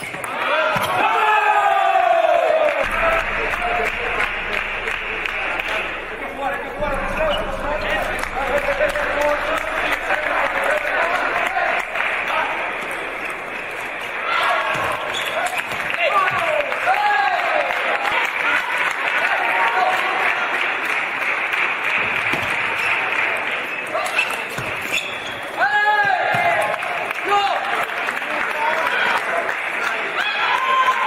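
Table tennis rallies: a celluloid-type ball ticking off rackets and bouncing on the table in a large, echoing hall. Short voiced shouts break in near the start, midway and near the end, typical of players calling out after winning points.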